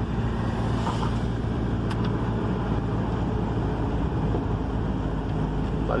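Car engine and tyre noise heard from inside the cabin while driving, a steady low drone at an even pace.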